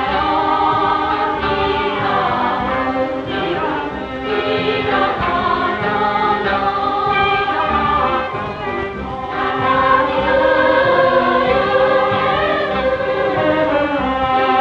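Music with a choir of voices singing, continuing throughout.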